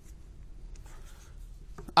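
Quiet studio room tone with a low steady hum, a faint rustle about a second in, and a faint click or two just before speech resumes.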